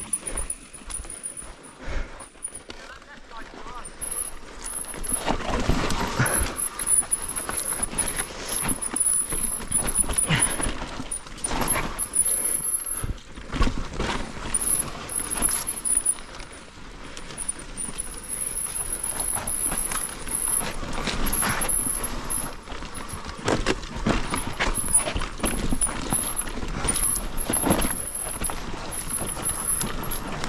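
Mountain bike riding down a rough dirt trail: the tyres rumble and the bike rattles and knocks irregularly over bumps. A thin high-pitched buzz comes and goes.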